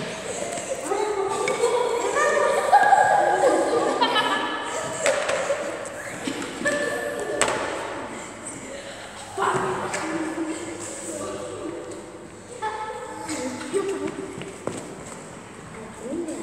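Children's voices calling out and talking in a large hall, with a few sharp thuds among them.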